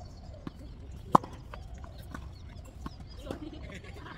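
A tennis ball struck sharply by a racket about a second in, the loudest sound, with softer knocks of balls hitting and bouncing on the hard court around it.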